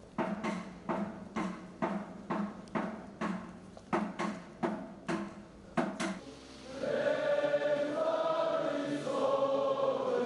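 A drum is beaten in a steady beat of about two strokes a second for the first six seconds. It stops, and a large group of voices starts singing together in long, held notes.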